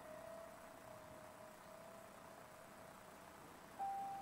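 Grand piano, faint: a single note left ringing and slowly dying away, then a new, higher note struck near the end.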